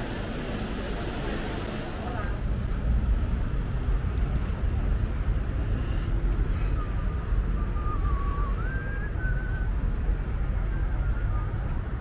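Indoor crowd chatter for about two seconds, then outdoor city ambience: a low, gusting rumble of wind on the microphone over street traffic, with a faint wavering high tone in the middle.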